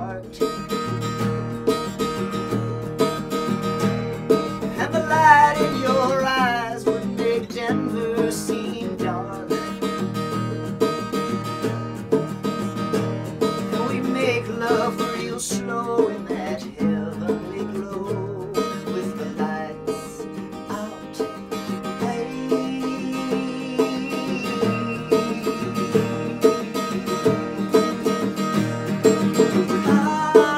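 Live acoustic country-folk music: acoustic guitars strummed and picked with hand-drum beats, in an instrumental passage without sung words.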